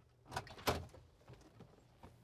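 Car doors of an older Buick being unlatched and swung open: two short clunks about a third and two thirds of a second in, the second louder, followed by faint clicks.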